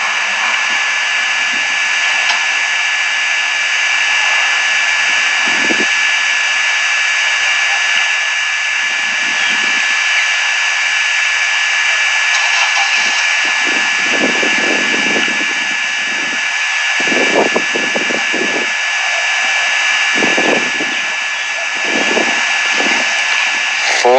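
Loud, steady rushing noise with a thin high whine running through it; low rumbles come and go in the second half.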